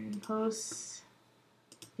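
Computer mouse clicking: a few sharp clicks just after the start, then two or three quick clicks near the end. At the start there is a short hummed, wordless vocal sound and a breath, which is the loudest thing.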